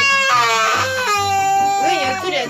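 Toddler crying in one long wail, holding a pitch and then dropping lower about a second in.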